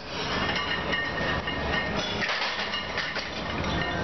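Weight-room din: metal plates and barbells clinking and rattling over a steady background noise, with a run of short metallic clicks in the first couple of seconds.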